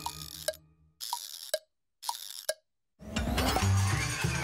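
Logo sound effects: a few short, pitched plinks and plops separated by moments of silence. About three seconds in, a bright, full musical jingle starts.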